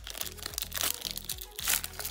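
Foil booster-pack wrapper being torn open and crinkled by hand, a rapid series of sharp crackles, over background music.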